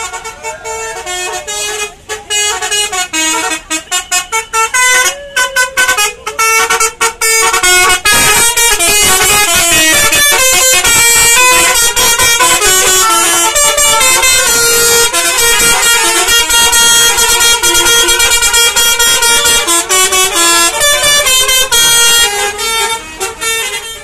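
Tour bus's multi-trumpet basuri "telolet" horn playing a melody, very loud. It starts in short broken toots, then runs continuously from about eight seconds in and eases off near the end.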